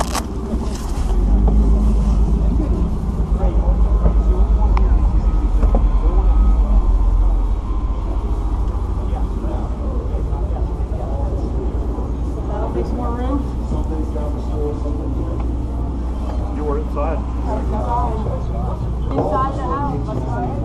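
Indistinct voices of a group of people talking quietly. A loud low rumble runs underneath for the first several seconds and dies away about seven seconds in.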